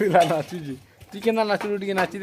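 Voices singing or chanting a short phrase, ending in one long held note through the second half.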